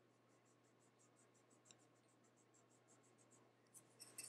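Very faint, rapid scratchy rubbing, about six strokes a second, at near-silent level: a fingertip rubbing a pressed powder blush to pick up a swatch.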